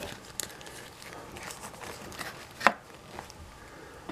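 Light handling of a cardboard box of glossy photos: faint rustling and soft taps, with one sharper click about two-thirds of the way through.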